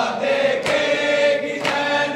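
Men's voices chanting a noha (Shia lament) together, with a sharp chest-beating strike (matam) about once a second.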